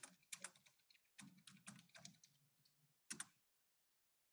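Faint keystrokes on a computer keyboard: short runs of taps, with a pair of taps about three seconds in.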